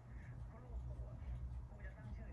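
Faint, distant speech over a steady low rumble.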